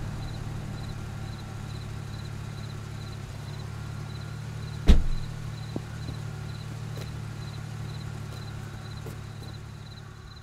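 A car idles steadily while a car door is shut with one loud thud about five seconds in. A faint high beep repeats about twice a second throughout.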